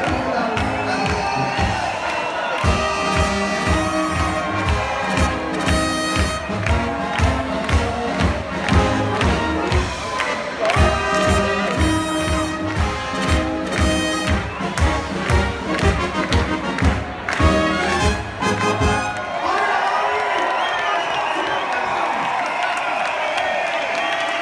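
Bavarian beer-tent brass band with tuba and trumpets playing a march with a steady oompah beat, the crowd cheering along. The band stops about 19 seconds in and the crowd goes on cheering.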